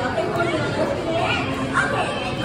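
Speech: a voice talking, with chatter around it.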